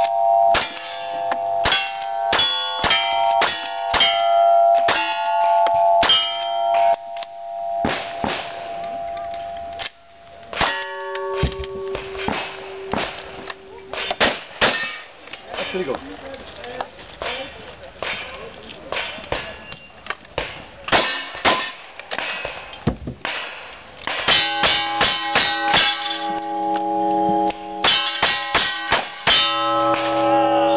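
A fast string of gunshots at steel targets, each hit answered by the clang of ringing steel: first from a rifle, then from a shotgun, with a dense flurry of shots and rings near the end.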